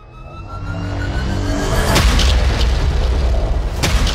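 Trailer score and sound design: a swell with rising tones builds from near quiet, then a heavy boom hits about halfway through. Deep sustained bass follows, and a second sharp hit comes near the end.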